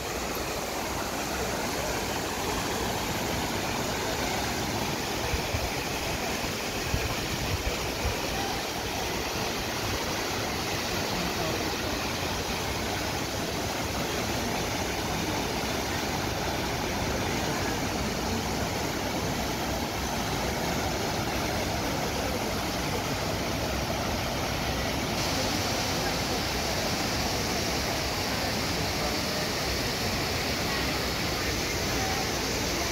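The Trevi Fountain's water cascading over its rock basin and splashing steadily into the pool, with a crowd of people talking around it.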